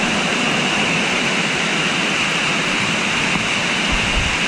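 Water falling in a cave shaft: a steady, even rush with no breaks.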